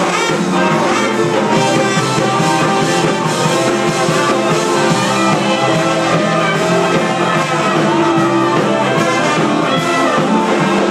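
Live band playing a loud, steady jam, with the horns carrying the lead over drums, bass and guitars.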